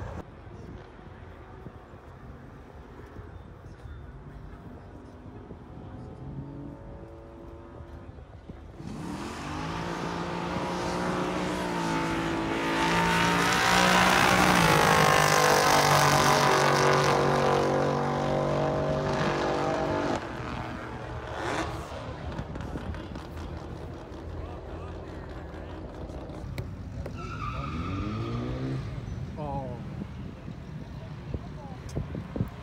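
Street-legal drag cars accelerating hard down a quarter-mile drag strip. The engine note climbs and swells for about ten seconds, is loudest as the cars pass about halfway through, then drops away. Near the end another engine revs.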